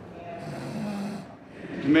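A person asleep on the floor snoring: one long snoring breath starting about half a second in and lasting about a second. A man's voice starts speaking right at the end.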